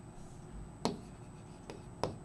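Pen writing on a board: faint strokes with a sharp tap about a second in and a fainter tap near the end.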